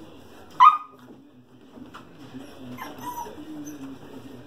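Australian Shepherd puppy giving one short, sharp, high yip about half a second in, then a fainter, falling call near three seconds.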